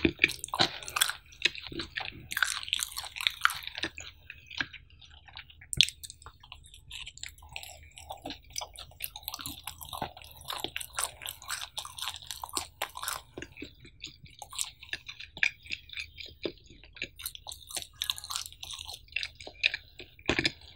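Close-miked chewing of a mouthful of cheese pizza: a dense, continuous run of small mouth clicks and smacks, with one sharper click about six seconds in.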